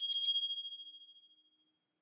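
Home Assistant Voice Preview Edition speaker playing its pre-announcement chime: one high chime that fades out over about a second and a half. It signals that the voice assistant is about to start an announcement that it opened itself.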